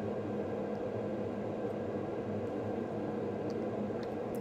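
Steady electrical or mechanical hum with a faint hiss underneath, the same tones throughout, and one or two very faint ticks.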